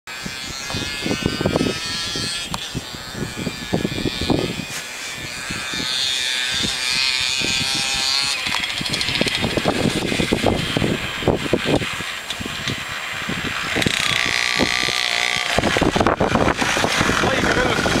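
Small Suzuki minibike's engine running as the bike rides up a snowy road toward the listener, growing louder as it comes close near the end.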